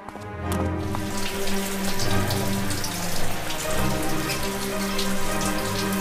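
Film soundtrack: low, sustained music notes under a dense, irregular patter of short ticks.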